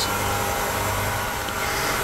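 Steady mechanical hum of laboratory equipment: an even drone with several steady tones running through it, without change.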